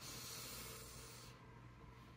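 A faint, long sniff through the nose, lasting about a second and a half, as a person smells a scented lip gloss wand.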